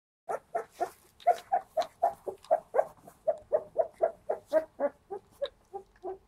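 Young puppy crying in a rapid, even series of short high-pitched yelps, about four a second, fading toward the end.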